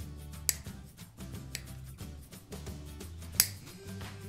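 Toenail nippers snipping through a toenail: three sharp clicks, about half a second in, a fainter one a second later, and the loudest near the end, over background music.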